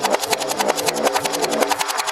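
Electronic dance music from a DJ set, with the deep bass dropped out, leaving a fast, even run of hi-hat ticks and short drum hits that fall in pitch.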